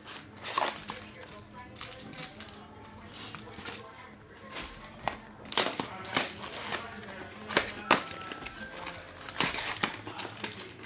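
Baseball card pack wrappers being torn open and crinkled by hand: a run of sharp crackles and rips, the loudest in the second half, over faint background music.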